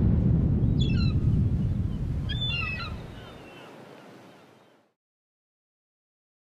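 Logo sting sound effect: a deep rumbling boom that dies away over about four seconds, with two short bursts of bird-like chirping in it, then silence.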